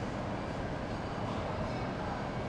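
Steady low rush of commercial kitchen ventilation, the exhaust hood fans running.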